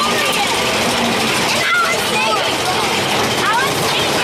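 Mine-train roller coaster climbing its chain lift hill: a steady mechanical running noise from the train and lift, with riders' voices over it.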